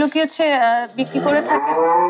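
Cattle mooing: one long, steady moo starts about a second in.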